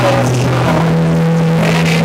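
Rock band playing live and loud, mostly instrumental for this moment, with held low guitar and bass notes that step up in pitch about two-thirds of a second in.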